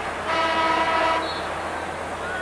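Basketball arena horn sounding once for about a second, a steady buzzing tone, signalling a substitution.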